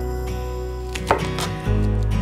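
A chef's knife knocks once against a wooden cutting board about a second in, as a garlic clove is crushed under the flat of the blade, over background music.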